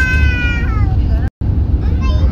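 Steady low rumble of the airliner's jet engines heard inside the cabin during the climb just after takeoff, with a young girl's high-pitched, drawn-out "wow!" over it in the first second. The sound cuts out for an instant just past halfway.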